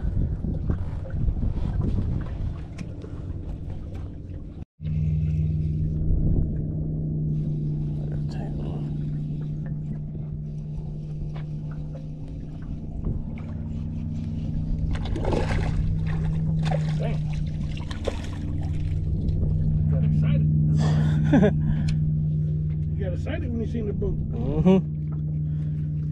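Boat motor running with a steady low hum that cuts in after a momentary dropout about five seconds in, with low handling noise before it.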